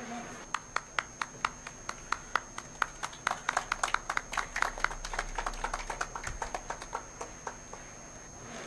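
A small group of people clapping by hand. The claps start sparse, build to a dense round in the middle and die away near the end.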